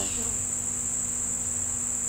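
Insects shrilling in one steady, high-pitched, unbroken drone, with a faint low hum beneath.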